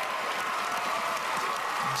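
Large theatre audience applauding steadily after a performance, a dense wash of clapping.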